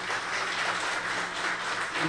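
Audience applauding: an even, steady wash of many hands clapping.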